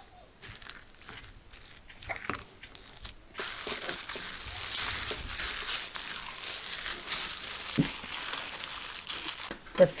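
Minced pork and shrimp filling stirred with a silicone spatula in a glass bowl, with a few light taps. About three seconds in, a hand in a disposable plastic glove starts kneading the filling, and the glove's plastic crinkles steadily.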